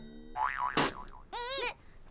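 Comic 'boing' sound effects: a wobbling, spring-like twang about half a second in, then a second short wavering tone near the middle, as the tail of the soundtrack music fades out.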